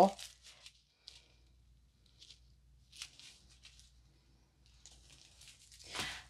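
Faint, scattered crinkling of clear plastic packaging being handled: a few short rustles, gathering into a longer stretch near the end.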